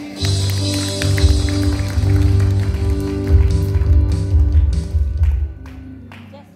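Live worship band starting up: held keyboard chords over a heavy bass, with a cymbal wash at the start and drum and cymbal strokes. The band drops off sharply about five and a half seconds in.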